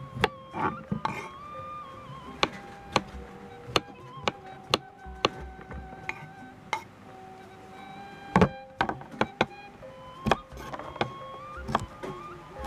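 Gentle background music with held notes, over which a kitchen knife cuts through cucumber onto a wooden cutting board in sharp, irregular knocks, coming quicker for a moment about eight seconds in.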